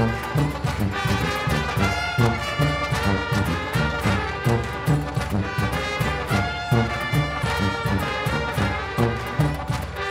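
Live Balkan-klezmer band playing a fast dance tune: sousaphone and horns, fiddles and a bass drum keeping a quick, steady beat.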